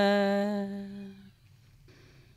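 A singer's voice holding one long, steady note in a Dao-language song, fading out about a second in, followed by a short pause with a faint breath near the end.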